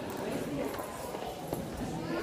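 A few footsteps on a hard floor, with faint voices in the background.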